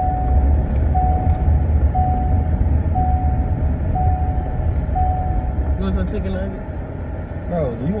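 Car warning chime inside the cabin: a single steady tone repeating once a second, six times, then stopping. Under it runs the low rumble of the moving car.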